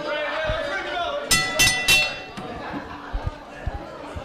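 Wrestling ring bell struck three times in quick succession, each strike ringing on briefly, signalling the start of the match.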